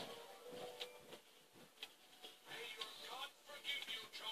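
Quiet room with faint background voices and music, and a few light ticks of a marker tip on a hard tabletop.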